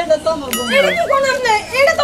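Speech: animated talking, with one high-pitched voice wavering up and down in pitch about half a second in.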